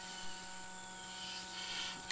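Faint steady electrical hum with a thin high-pitched whine over it: background noise with no distinct event.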